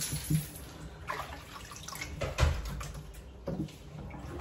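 Water sloshing and splashing in a kitchen sink as raw chicken is washed by hand, with a few short knocks and splashes, the loudest about two and a half seconds in.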